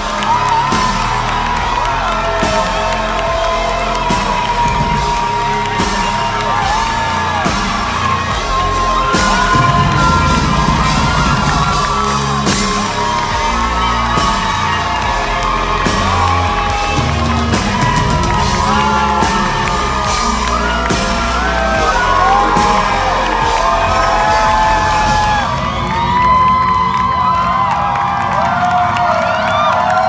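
Live pop band playing the closing instrumental part of a song, with drums and bass keeping a steady beat, while the crowd whoops and cheers over it. Near the end the band thins out and the cheering carries on.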